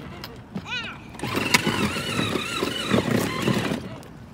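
Electric ride-on toy truck's motor and gearbox whining steadily for a couple of seconds as it drives, with a click about a second and a half in. A short high gliding voice sound comes just before it.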